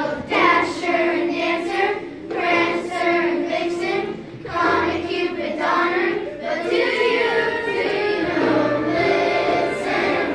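A children's choir of fifth graders singing a Christmas song together in phrases, with steady sustained accompaniment notes underneath.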